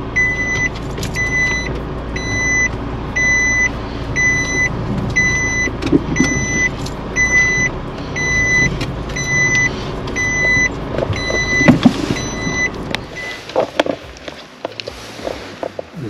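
A car's reverse-gear warning beep sounding in the cabin at an even rate of about once a second while reversing into a parking space, over the engine's low idle hum. There is a single knock shortly before the beeping and the engine hum stop together, about three-quarters of the way through; faint clicks and rustling follow.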